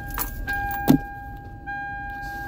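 Car's electronic warning chime sounding in long steady tones of about a second each, broken by short gaps, with the engine switched off. A single sharp knock or click near the middle is the loudest moment.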